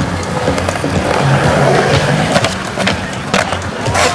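Skateboard wheels rolling and clacking on concrete, with sharp knocks from the board throughout. Music with a bass line plays under it.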